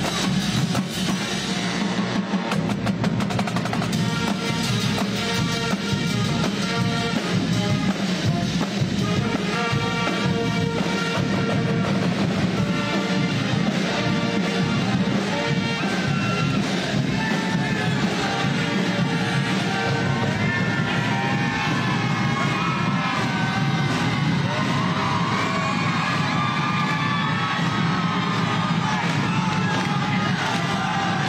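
A high school marching band plays loud and steady: a drumline on snare, tenor and bass drums with sousaphones, trombones and clarinets. A crowd's cheering and shouting joins in over the second half.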